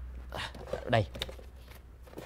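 Ring binders being pulled and shuffled on a bookshelf, short dry rustles and scrapes, under a man's hurried muttering.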